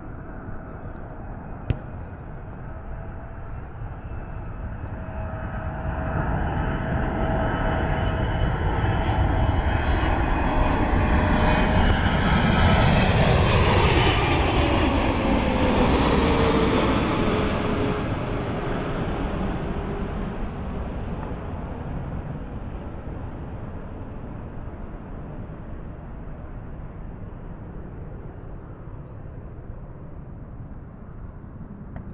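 Aeroflot Boeing 777-300ER's GE90 turbofan engines on landing approach. The sound swells to its loudest as the airliner passes low overhead about halfway through, then its whining tone falls in pitch and fades as it moves off toward the runway. Wind rumbles on the microphone throughout.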